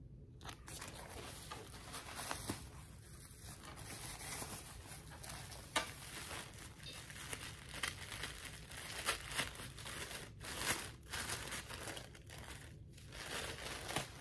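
Tissue paper being unwrapped by hand, crinkling and rustling with a steady run of small crackles.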